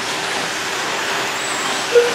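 Electric RC short-course trucks running on a dirt track: a steady whirring of motors and tyres, with a faint high motor whine passing about a second and a half in.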